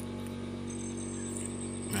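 A steady low hum, with a faint high thin whine joining about a second in.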